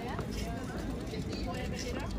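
Several passers-by talking as they walk by, their voices overlapping, over a steady low rumble of harbour and city background.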